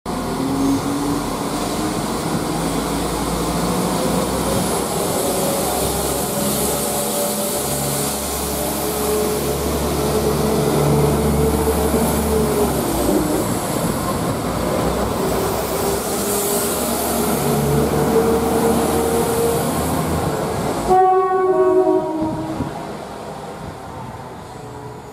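Diesel multiple-unit passenger train running past at close range, its engine and transmission whine rising and falling in pitch over a steady rumble of wheels on rail. About 21 s in, a train horn sounds briefly, and the noise then falls away.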